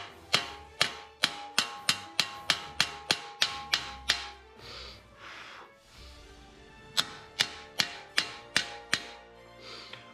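Rapid hammer blows on sheet steel resting on a steel plate on an anvil: sharp, ringing metal strikes about three a second. They come in two runs, with a pause of about three seconds in the middle. Background music plays underneath.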